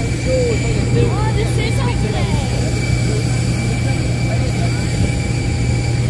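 Steady drone of aircraft engines running on the apron, a constant low hum with a thin, high, even whine above it. Faint voices come and go over it in the first couple of seconds.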